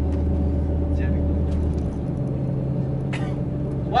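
Tour bus engine and road noise heard from inside the cabin while driving, a steady low hum whose lowest note steps up slightly in pitch about halfway through.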